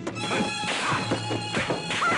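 Film soundtrack music running under the dubbed punch and crash sound effects of a martial-arts fight, several sharp impacts in quick succession.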